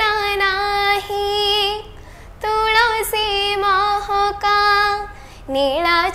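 A young girl singing an Odia Jagannath bhajan unaccompanied, holding long notes with ornamented turns, with two short pauses for breath.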